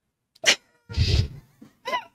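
Laughter: silent at first, then short breathy bursts of laughing from about half a second in, ending in a brief voiced laugh near the end.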